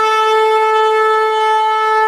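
A blown horn holding one long, steady note.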